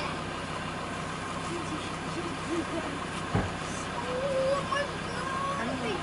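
A steady low mechanical hum under faint voices, with a single thump about three and a half seconds in.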